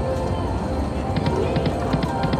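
88 Fortunes slot machine spin sounds, with pairs of short clicks as the reels stop from about a second in, over casino-floor noise of other machines' music and indistinct voices.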